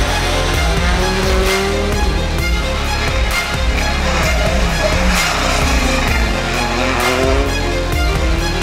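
Loud background music with a heavy bass beat, with a Hyundai i20 R5 rally car's engine revving and passing underneath it.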